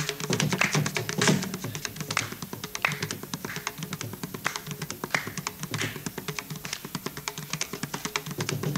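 Mridangam played in rapid, dense strokes over a steady drone.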